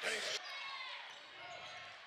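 Basketball court sound in a gym: a short burst of crowd noise right after a made jumper that cuts off after about half a second, then sneakers squeaking on the hardwood floor.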